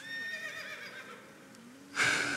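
A horse whinnying once, a high call that falls away within about a second.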